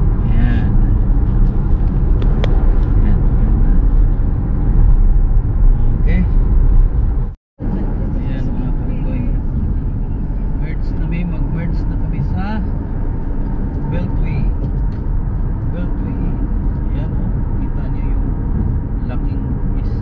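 Steady road and engine noise inside a moving car's cabin, with faint voices under it. The sound drops out for a moment about seven and a half seconds in.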